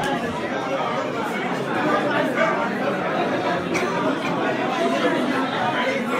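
Many people talking at once in a large hall: a steady hubbub of guests' overlapping chatter, with no single voice standing out.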